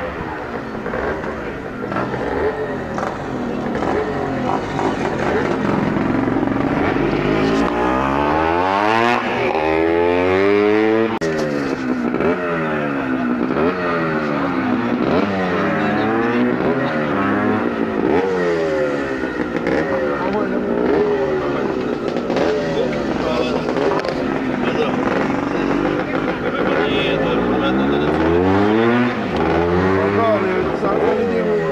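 Several vintage racing motorcycle engines revving up and down at once, their pitch rising and falling over and over in overlapping sweeps.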